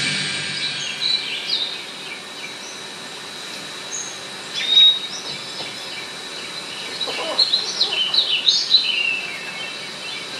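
Birds calling: short chirps scattered through, with one louder whistled note about five seconds in and a busy run of quick calls in the last three seconds.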